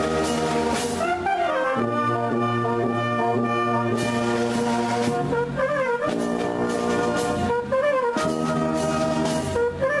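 Italian town wind band (banda) playing: trumpets and trombones hold sustained chords that shift every second or two, over a wavering melody line. Occasional sharp percussion strikes cut through.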